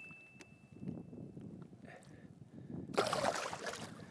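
Water sloshing and gurgling beside a kayak as a released musky swims off, with a louder rush of splashing water about three seconds in. A thin, steady high tone sounds through the first second and a half.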